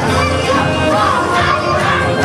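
Loud yosakoi dance music with a group of dancers shouting together over it.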